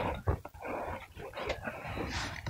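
Close-miked rustling and crinkling of a clear plastic cup and its thin plastic wrap as it is handled and brought to the mouth, with a few small clicks.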